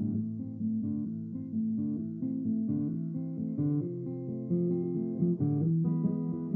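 Instrumental song intro: a guitar playing a sequence of changing notes.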